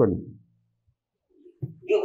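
A person's voice: a drawn-out syllable that falls in pitch and fades in the first half second, a pause of about a second, then speech resumes near the end.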